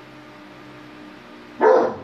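A dog barks once, loud and short, near the end, over a low steady hum.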